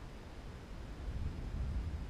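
Low wind rumble buffeting the microphone of a balloon payload's camera, over a faint steady hiss; the rumble grows louder about a second in.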